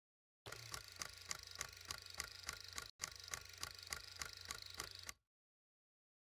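Faint, regular ticking, about three ticks a second over a low steady hum, with a brief break just under three seconds in; it stops about five seconds in.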